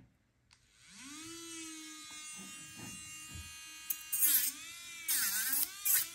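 Melodysusie portable electric nail drill with a sanding band, spinning up about a second in and then whining steadily. Twice near the end its pitch sags with a gritty sanding noise as the band bears on the plastic gel nail tip.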